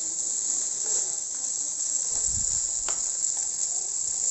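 Metal spatula and wooden spoon stirring fried rice in a wok, with one sharp scrape or click about three seconds in, over a steady high-pitched hiss.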